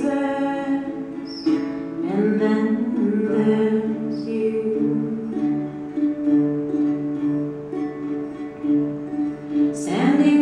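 Small acoustic string instrument strummed in a slow, steady rhythm, playing a chord progression as an instrumental break in a gentle ballad.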